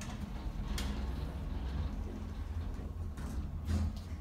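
Kone traction elevator car setting off upward: a steady low rumble of the car in motion, with a couple of faint clicks near the start.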